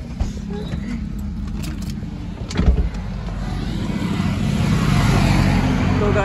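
A car engine running with a steady low rumble, broken by one heavy thump about two and a half seconds in. Then the hiss of passing road traffic swells and grows louder toward the end.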